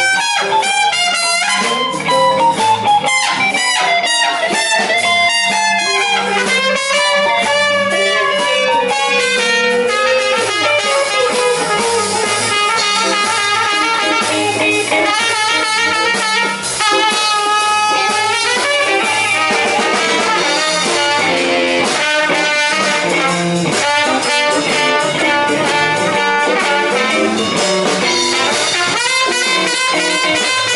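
Live blues band: a trumpet plays a melodic solo over electric guitar and drums.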